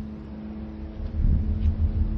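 Low rumble of a car's interior while driving, with a steady low hum over it. The rumble drops away in the first second and swells back about a second in.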